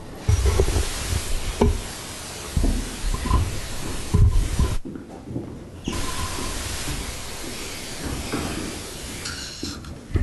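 Papers being handled and shuffled close to table microphones, with a few dull knocks in the first half over a steady hiss.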